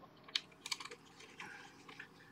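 Faint clicks and rattles of jumper wires being pushed into the coil-spring terminals of a Maxitronix Sensor Robot 20 electronics kit: one sharp click about a third of a second in, then a scatter of lighter ones.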